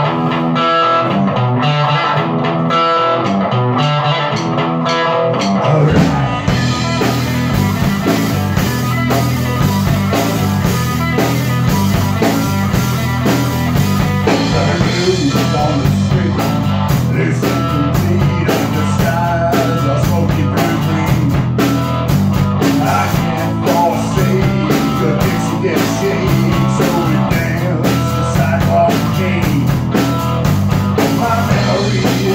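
Live rock jam in a small room: an electric guitar plays alone for about the first six seconds, then the drum kit comes in with cymbals and the band plays on at full volume.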